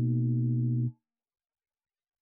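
A steady, low sustained musical tone with several overtones, gong-like, that cuts off abruptly about a second in.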